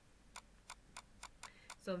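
Computer mouse scroll wheel ticking about seven times while scrolling a document, the ticks coming slightly faster towards the end.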